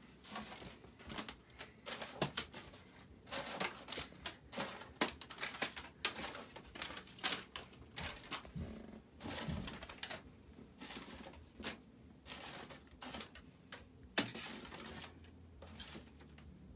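Paper rustling and crinkling in irregular bursts as folded paper airplanes and sheets of paper are handled and rummaged through in a box, with a sharper knock near the end.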